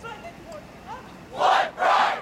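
Two loud, short shouts from many voices at once, the second right after the first, over faint crowd murmur.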